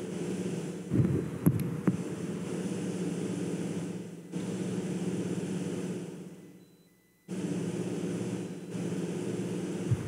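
Steady low hum and rumble of room noise, with a few short knocks between about one and two seconds in. It fades away around seven seconds and cuts back in suddenly.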